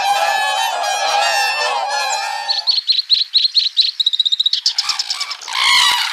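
A flock of whooper swans calling over one another in a dense chorus for the first two and a half seconds, followed by a quick run of thin high notes from another bird for about two seconds. Near the end, red-crowned cranes start calling.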